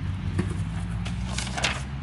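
A steady low hum with a few soft handling noises from the box of a YouTube silver play button being handled.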